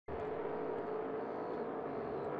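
Engines of 6-litre displacement class race boats running steadily at speed, heard from a distance.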